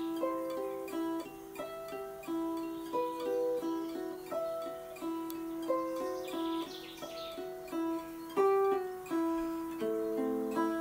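Hollow-body archtop guitar playing a riff of single picked notes that ring into each other. A fretted note on the G string alternates with the open high E string, and a note on the B string is added in each phrase. The phrase repeats about every three seconds and moves down a fret near the end.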